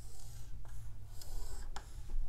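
Dry-erase marker scraping and squeaking on a whiteboard in a series of short strokes as a short answer is written and boxed in.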